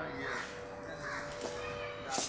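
Harsh, crow-like bird calls, two short caws, one early and one about a second in, over a faint steady hum.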